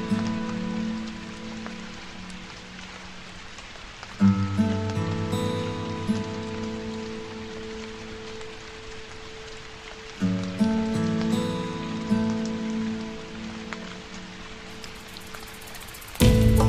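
Steady rain falling on hard surfaces and foliage, heard under soft instrumental music whose chords are struck about four seconds in and again about ten seconds in, each fading away slowly.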